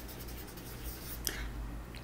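Felt-tip marker writing on a paper flip chart: a few faint, brief strokes, the clearest a little past halfway, over a low steady hum.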